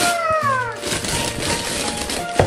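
Wrapping paper being torn off a large gift box over background music, with one long cry that rises briefly and then falls in pitch in the first second.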